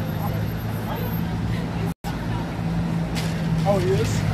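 Busy street ambience: a steady low traffic hum under faint chatter from people nearby. The sound cuts out to silence for a moment about halfway through.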